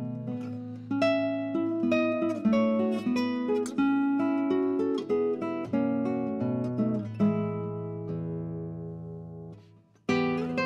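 Background music of acoustic guitar playing a plucked melody over bass notes. Near the end a last chord rings out and fades almost to silence.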